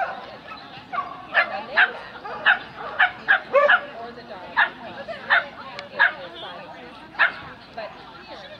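A dog barking: about ten short, sharp barks at uneven intervals, the last one near the end.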